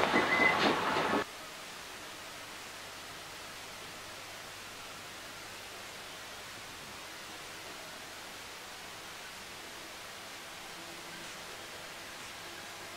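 Loud background noise from an open microphone that cuts off abruptly about a second in, leaving a steady faint hiss for the rest.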